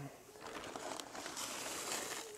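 Granular oil-dry absorbent sprinkled from a gloved hand onto wet ash in a steel fire pit, a faint, steady granular rustle.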